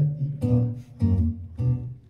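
Acoustic guitar being strummed: about four chords, roughly half a second apart, each ringing briefly before the next.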